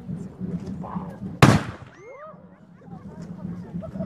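A small black-powder cannon fires once, about a second and a half in, with a sharp bang that dies away quickly. Voices of onlookers are heard around it.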